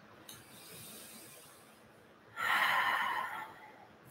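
A person taking a slow deep breath during a guided breathing exercise: a faint inhale, then a louder, airy exhale that starts a little past halfway and lasts about a second.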